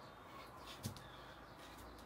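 Bare feet tapping faintly on a tiled floor during mountain climbers, with one clearer thump a little before halfway, over a steady low hum.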